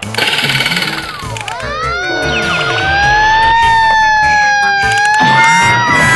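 Background music overlaid with sound effects: a long falling whistle starting about a second in, then a held, slowly wavering siren-like tone.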